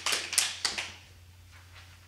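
Sheets of paper rustling and crackling as a page is turned on a music stand, a quick run of crisp crackles that fades out about a second in. A low steady hum runs underneath.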